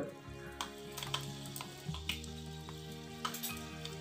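Fenugreek seeds sizzling in hot oil in a small kadai, with a few faint scattered pops, under soft background music: the tempering for sambar.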